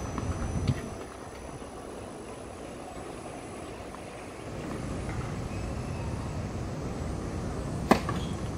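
Tennis racket striking the ball on a serve: one sharp crack just before the end, the loudest sound here, over steady outdoor background noise. A lighter tap comes about a second in.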